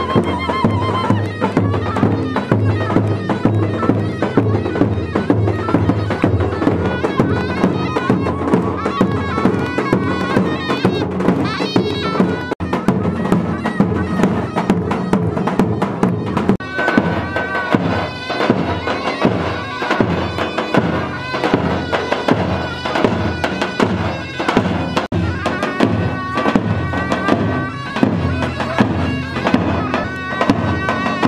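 Kurdish folk dance music played live: two davul bass drums beat a steady dance rhythm, with a melody line carried over them.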